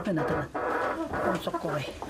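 A woman speaking: interview speech only.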